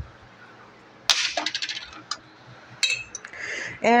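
Short clicks and light knocks of a tahini jar and its plastic screw lid being handled: a cluster about a second in, then a few single clicks.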